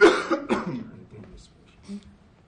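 A person coughing: a sharp, loud cough at the start and a smaller one about half a second later.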